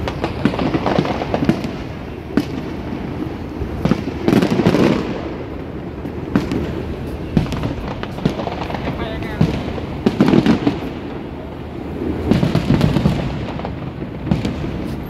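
Aerial fireworks bursting in rapid, irregular bangs, with louder clusters about four seconds in, around ten seconds, and near the end.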